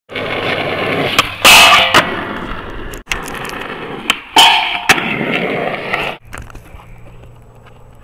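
Skateboard wheels rolling on asphalt, with sharp pops and a loud, half-second metal scrape of a truck grinding along a flat rail about a second and a half in and again about four and a half seconds in. The rolling cuts off suddenly twice, and the last two seconds are quieter.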